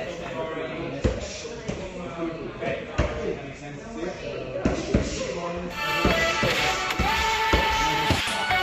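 Punches landing on a handheld focus mitt: several sharp smacks at uneven intervals. Background music runs under them and gets louder about six seconds in.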